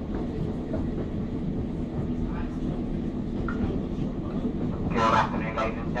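A passenger train running, heard from inside the carriage: a steady low rumble of wheels on rail and the train's drive. About five seconds in, an on-board announcement begins over it.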